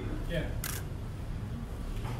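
Indistinct voices over a steady low hum, with one sharp click just over half a second in.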